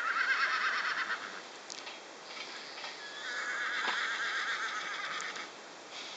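Warmblood horse whinnying twice: a quavering call about a second long at the start, then a longer one of about two seconds beginning around three seconds in.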